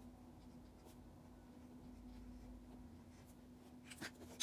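Faint strokes of a Crayola marker's felt tip on paper as letters are written, over a low steady hum.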